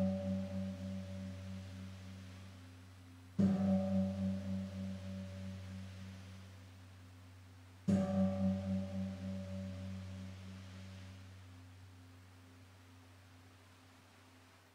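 A deep-toned gong struck twice, about four and a half seconds apart, each stroke ringing on with a wavering hum and slowly dying away; the ring of a stroke just before is already sounding at the start. The strokes mark the priest's blessing with the Blessed Sacrament in the monstrance.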